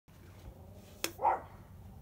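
A sharp click about a second in, then a single short dog bark.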